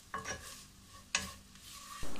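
Wooden spatula stirring pork and koorka pieces in a nonstick pot, with a faint sizzle of frying. Two sharper scrapes or knocks stand out, the louder one a little after one second in.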